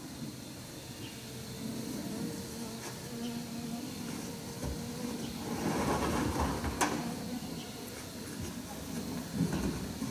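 A faint, steady buzzing hum in the outdoor air through the first half, with one sharp click about seven seconds in.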